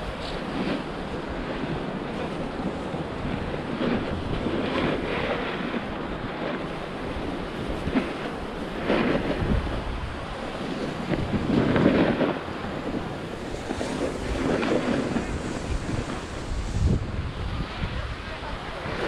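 Wind rushing over an action camera's microphone while sliding downhill on snow, with repeated swells of edges scraping across the packed snow, the loudest about twelve seconds in.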